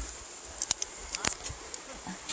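Faint, steady rush of a small creek running under a wooden footbridge, with a few light clicks and knocks scattered through it.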